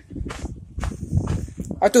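Footsteps and the rustle of a handheld phone being carried while walking, with a brief hiss in the middle.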